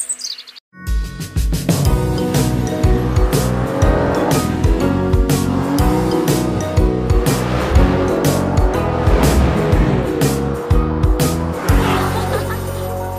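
Cartoon soundtrack music with a steady drum beat, mixed with race-car sound effects: an engine revving up and down and tyres squealing. It starts after a brief silence just under a second in.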